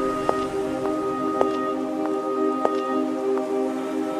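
Instrumental intro of a pop song: a held chord of several steady notes with a sharp click about once a second.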